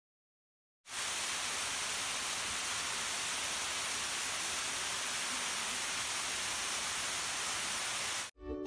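Small waterfall pouring down a rock face: a steady, even rush of falling water that cuts in abruptly about a second in.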